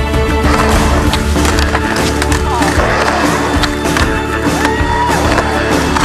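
Skateboard wheels rolling on concrete with scattered clacks of the board, mixed with background music of steady held tones.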